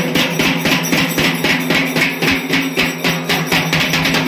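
Rhythmic drum and percussion music, about four strokes a second, over a steady low drone.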